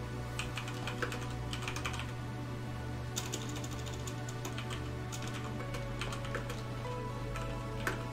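Computer keyboard being typed on in irregular runs of keystrokes, over quiet background music.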